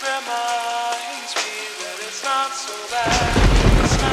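Slowed, reverb-heavy music with a steady rain sound effect under a sustained melodic line. About three seconds in, a deep rumble of thunder comes in and becomes the loudest sound.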